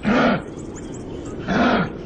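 Kangaroo giving short, gruff grunting calls: one at the start and another about a second and a half later, each about half a second long with a low pitch that rises and falls.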